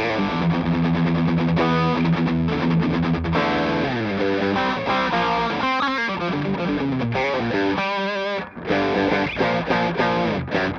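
Charvel Pro-Mod San Dimas Style 2 electric guitar on its bridge humbucker, played through a pedal into a clean amp, with a lot of clean tone coming through. One note is held for the first few seconds, then it moves into phrases of changing notes, with a short break near the end.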